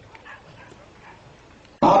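A short pause of faint background noise with a few faint distant sounds, then a man's voice starts speaking again near the end.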